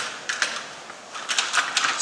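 Measuring cup clicking and scraping against a bowl as flour is scooped and measured, in short clusters of knocks with a denser run in the second half.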